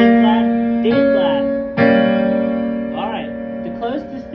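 Chords played on an Alesis QS8.2 digital keyboard with a piano sound, struck three times about a second apart, each held and ringing on.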